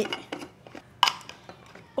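Stainless steel vacuum flask being closed: a few light clicks as the stopper and cap are twisted on, then one sharp metallic clink about a second in.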